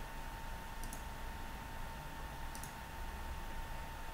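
Two faint computer mouse clicks, about a second and a half apart, over a quiet steady hiss with a thin constant whine.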